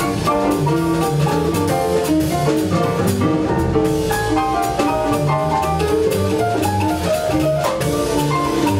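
Live jazz trio playing a blues: quick single-note keyboard lines over upright double bass and drum kit, with regular cymbal strokes.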